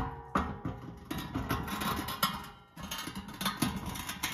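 Brushed-steel stove door frame knocking, scraping and clinking against the firebox as it is slid into place, the metal ringing. The loudest knock comes right at the start, followed by a run of irregular clinks and scrapes.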